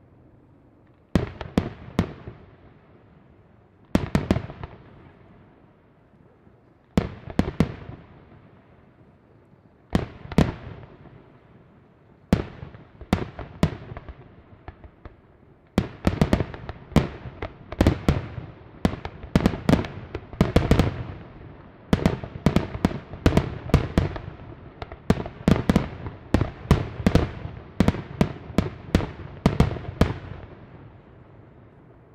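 Aerial firework shells bursting: volleys of bangs about every three seconds, each trailing off in echo, then from about halfway a dense, continuous barrage of bursts.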